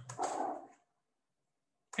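A man's voice finishing a short spoken word at the start, then dead silence from a noise gate until speech resumes at the very end.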